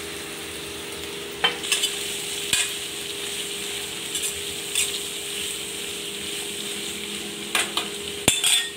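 Mixed vegetables sizzling in a nonstick kadai as they are stirred, with a few sharp knocks and scrapes of the spoon against the pan, over a steady low hum.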